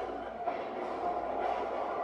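Movie trailer soundtrack playing from a tablet's small speaker and picked up in the room: a steady, dense mix of music and effects with no clear words.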